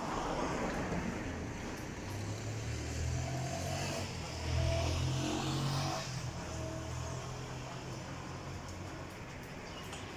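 A low motor rumble with a steady pitch that swells about two seconds in, is loudest around the middle and fades away after about six seconds.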